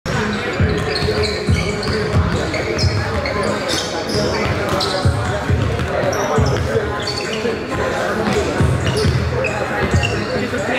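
Basketballs dribbled on a hardwood gym floor: irregular low thumps, one to two a second and sometimes overlapping, with short high sneaker squeaks in between.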